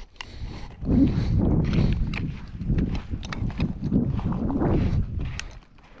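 Footsteps crunching on a gritty pumice-and-sand trail, roughly one step every half second or so, with sharp little ticks of grit underfoot; they fade out near the end.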